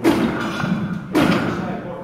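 Heavily loaded barbell thudding and its iron plates clanking and rattling on the bar at each rep of fast half squats: two loud strokes about a second apart, each ringing on briefly.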